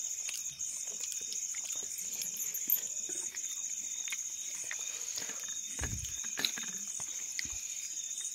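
Eating by hand from a steel plate: fingers mixing and scraping rice on the metal, with small clicks and a dull knock about six seconds in, over a steady high-pitched hum.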